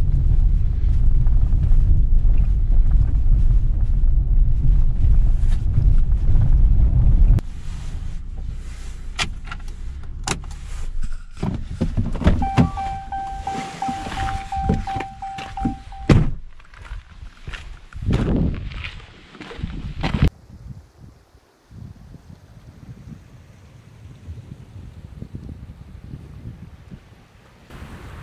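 Ram pickup truck cab noise, a steady low rumble while driving on a gravel road, which stops suddenly about seven seconds in. Clicks and knocks follow as the driver's door is opened, with a steady chime held for several seconds that ends with a sharp thunk, then a few more thuds and faint wind.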